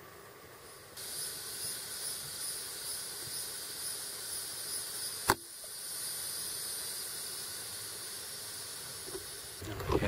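Steady high-pitched drone of insects in the riverside vegetation, starting suddenly about a second in, with one sharp click about five seconds in.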